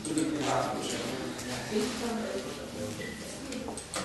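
Low, indistinct voices talking in a room.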